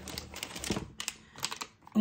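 Plastic snack wrappers and packaging crinkling and clicking as they are handled and put down, in a quick, irregular run of rustles and light taps that stops just before two seconds in.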